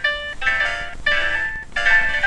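Computer-generated, chime-like electronic tones, several notes sounding together and changing every fraction of a second, with a brief drop about 1.7 s in. The notes are triggered by movement that the camera's motion tracking picks up in the street.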